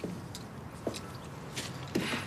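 Quiet background with a few soft clicks and rustles as a passenger gets into a car.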